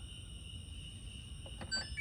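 Control panel of a GE front-load washer/condenser dryer combo giving a few short, faint electronic beeps with light button clicks near the end, as its buttons are pressed to set the dry cycle.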